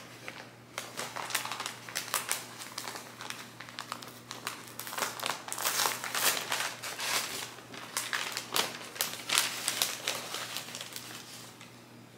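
Plant shipping packaging being unwrapped by hand: paper and tape crinkling and rustling in irregular crackles, busiest around the middle.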